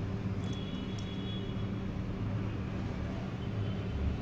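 Steady low hum of background noise, with a faint high tone and two light clicks about half a second to a second in.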